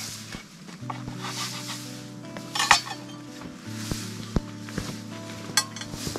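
A few clinks and knocks of a knife and dishes being handled on a wooden cutting board, the loudest a short clatter about two and a half seconds in, with a quick rattle near the end. Soft background music of held notes plays underneath.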